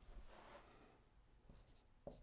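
Dry-erase marker writing on a whiteboard, very faint: a few light taps and short strokes over near silence.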